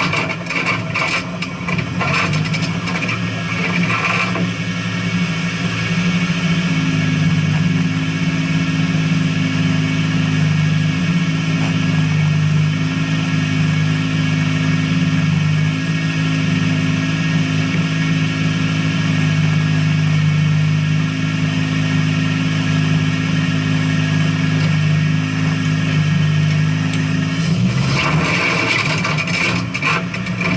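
Rally car's engine idling steadily, heard from inside the cabin, with the revs rising briefly near the end.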